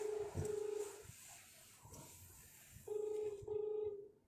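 Telephone ringback tone of an outgoing call ringing out, heard over the phone's speaker. It comes as a double ring, two short tones close together, then a pause of about two seconds and the double ring again near the end.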